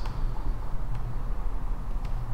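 Room tone in a pause between speech: a steady low hum under faint hiss.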